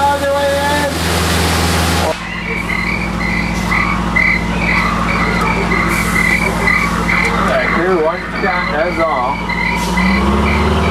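Steady low hum of a jungle-ride tour boat under a regular high chirping, about two or three chirps a second, like frog calls from the ride's jungle soundtrack. The sound changes about two seconds in, and wavering voice-like calls join near the end.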